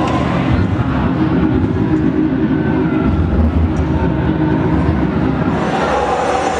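Loud, steady low rumble from the stage PA speakers, a bass-heavy stretch of the dance music track between songs.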